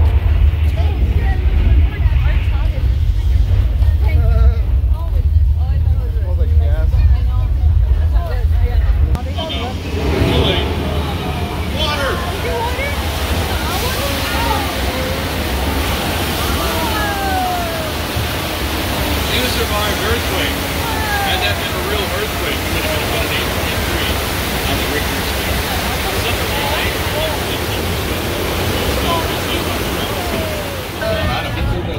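Studio Tour earthquake show effects: a deep, heavy rumble for about the first nine seconds, then an abrupt change to a loud rush of flood water pouring over the set, with riders' voices crying out over it.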